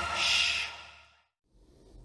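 The closing notes of an advert's music ring out and fade away, with a short breathy hiss in the first half second, then a brief silence.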